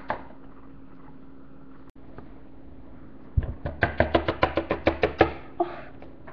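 Quick run of about a dozen sharp taps over two seconds, starting a little past halfway: a small plastic toy figure hopped along a hard tabletop as if walking. Before the taps there is only a low steady hum.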